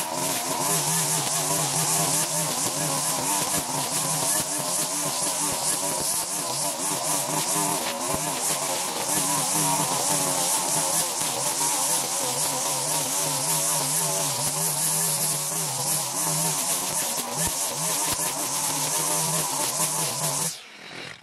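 Petrol string trimmer running at high speed, its nylon line cutting through overgrown grass and weeds. The engine note is steady and wavers slightly in pitch.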